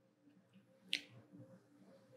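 Near silence: faint room tone, with one brief, sharp click about a second in.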